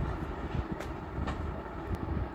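A steady low rumble, with a few soft rustles and ticks as a folded jute georgette saree is laid out flat on a sheet-covered table.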